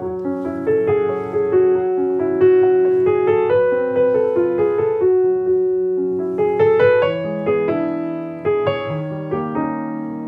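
Grand piano playing a slow, quiet lyrical passage, the left-hand accompaniment kept soft and blurred beneath the right-hand melody, notes held and overlapping under the pedal. The line falls away in a diminuendo that the pianist finds uneven, the C sharps poking out a little too much.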